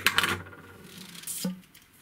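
A few sharp metallic clicks as a metal caliper is set down on a wooden tabletop, followed by soft rubbing and handling noise of a fishing rod being picked up.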